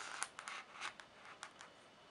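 Knife blade scratching and nicking at the plastic shrink wrap on a cardboard box: a string of short, faint scratches that die away after about a second and a half.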